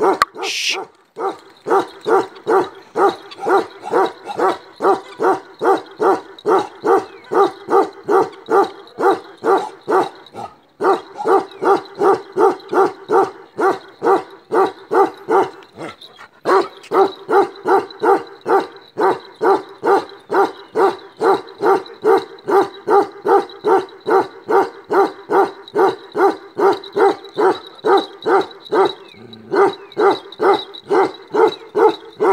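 A Himalayan livestock guardian dog barking without let-up, in an even rhythm of about two to three barks a second, breaking off briefly twice.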